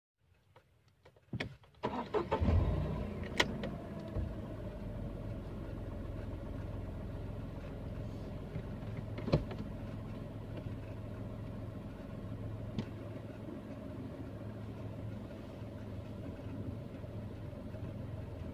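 Tata Tigor car engine started about two seconds in, after a couple of clicks: it runs up briefly as it catches, then settles into a steady idle. A few sharp clicks sound over the idle.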